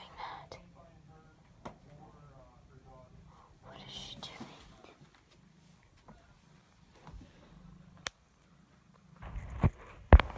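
Soft whispering close to the microphone, with a few sharp clicks and louder rustling and knocking near the end as the phone is handled and moved.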